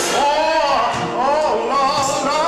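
Gospel music: sung vocals over instrumental accompaniment, the voice sliding up and down in pitch.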